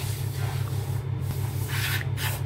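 Steady low hum with a layer of hiss, the background of a car cabin with the engine running; a soft breath near the end.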